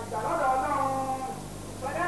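A single voice singing a chant with long, wavering held notes that slide between pitches, over a steady low electrical hum.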